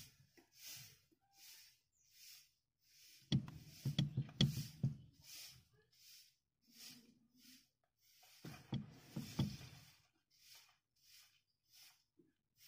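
Clicks and light knocks from the pushrod of a hydraulic clutch at the clutch pedal, turned by hand to adjust the pedal height. They come in two clusters, about a third and three quarters of the way in, over a faint rustle that repeats roughly every half second.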